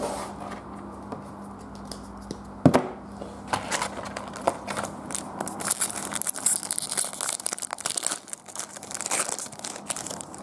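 Foil trading card pack wrapper being torn open and crinkled by hand, a dense crinkling through the second half. A single sharp knock comes near three seconds in.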